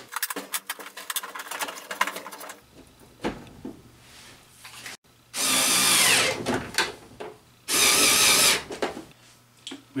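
Cordless drill driving screws tight in two runs, the first about a second and a half long and the second about a second, after a few seconds of light clicking and handling.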